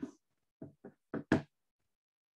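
About five short knocks, irregularly spaced through the first second and a half, the last one the loudest and sharpest.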